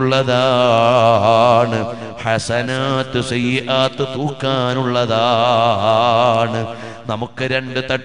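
A man's voice chanting in long melodic phrases, holding sustained notes that waver in pitch with ornamented turns, in the style of Quranic recitation.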